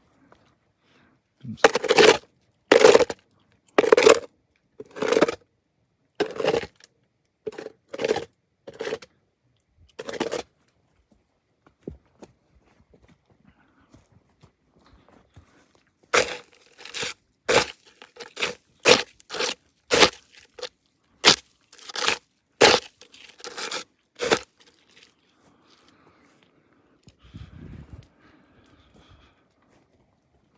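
Footsteps crunching over snow-dusted tundra brush and frozen ground at a walking pace, about one step a second. After a short pause they come faster.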